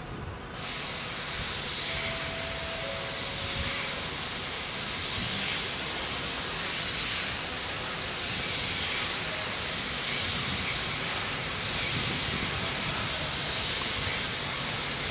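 Stanier Black Five 4-6-0 steam locomotive 45305 letting off steam: a loud, steady hiss that starts suddenly just under a second in and carries on without a break or any exhaust beat.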